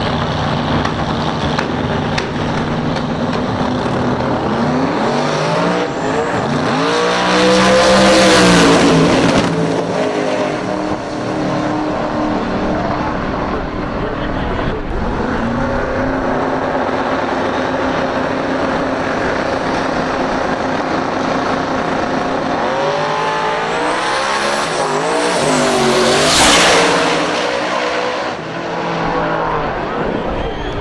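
Drag-radial race cars running side by side at the starting line, then launching: engine pitch climbs and sweeps past loudly about a third of the way in. The sequence repeats with a second pair, peaking near the end.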